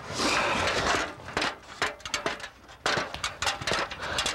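A small tree's branches rustling and knocking as it is handled: a noisy rustle in the first second, then a string of sharp clicks and knocks.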